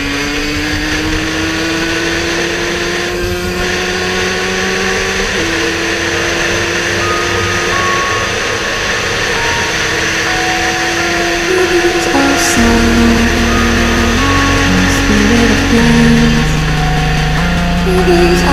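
The two-stroke single-cylinder engine of a 2005 Husqvarna SMS 125 supermoto pulling hard, rising in pitch as it accelerates, mixed under electronic dance music. The music's bass and beat come in strongly about twelve seconds in and take over.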